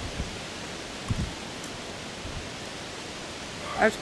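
Steady hiss of outdoor background noise, with one brief low thump about a second in.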